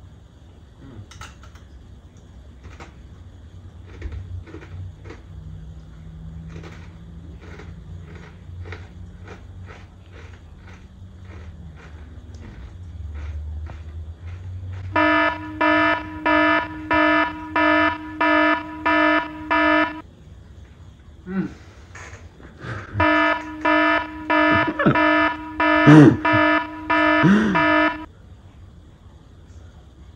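Faint crunching as a One Chip Challenge tortilla chip is chewed. About halfway through, a loud electronic alarm starts beeping about twice a second for about five seconds, stops, then comes back for another five seconds, with a few short vocal sounds between and under the second run.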